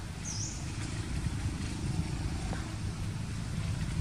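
A motor vehicle engine running nearby as a steady low rumble, with one brief high chirp about a third of a second in.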